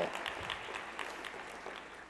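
Audience applauding, fading away over the two seconds.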